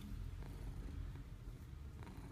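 Domestic cat purring steadily while being scratched about the head and cheek.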